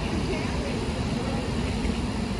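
Steady drone of a large honeybee swarm buzzing around the hive box, a low hum with no breaks; the bees are stirred up and not yet calm.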